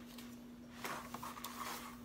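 Cardboard box being handled and its flaps opened: faint rustling scrapes and a few light taps of cardboard, most of them around a second in.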